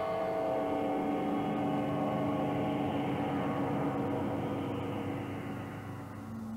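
Electronic art-film soundtrack: a sustained drone of many held tones over a low rumble that thickens through the middle, its upper edge slowly sinking.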